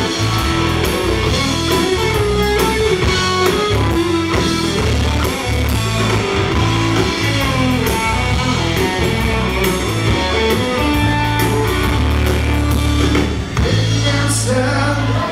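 Live country-rock band playing an instrumental passage: guitar lead over bass guitar and drum kit, with no singing.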